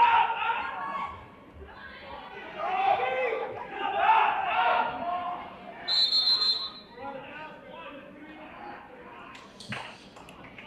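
A referee's whistle gives one short, shrill blast about six seconds in, stopping the wrestling action, over voices in the gym.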